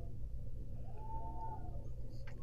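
Faint football-stadium field ambience: a steady low rumble with a soft, short rising-and-falling call about a second in.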